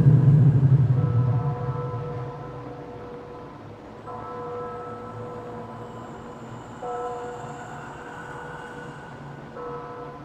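Eerie horror-film soundtrack. A deep low sound that began just before fades away over the first three seconds. Then a held chord of several higher notes comes in four times, about every three seconds.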